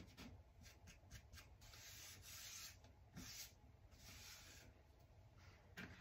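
Faint rubbing of hands over a painted laser-cut wooden tray piece: a few light clicks, then three longer soft brushing strokes.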